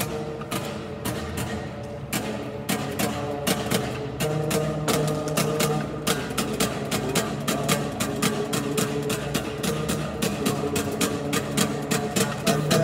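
Music played on a homemade stringed instrument built from branches and a board: a fast, even clicking beat over held low notes.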